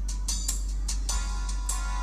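Toy piano played note by note: about six single notes struck in turn, the last two ringing on a little longer.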